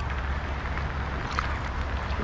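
Steady hiss of rain falling on the lake, with a low rumble underneath and one faint tick about one and a half seconds in.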